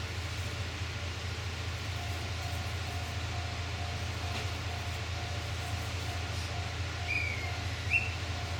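Diesel railcar engine idling with a steady low hum while the train stands at the platform. From about two seconds in, a short ringing tone repeats about twice a second. A brief falling chirp comes near the end.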